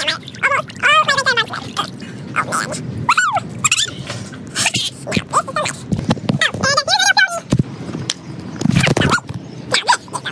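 Sped-up character voices: rapid, high-pitched chattering speech too fast to make out.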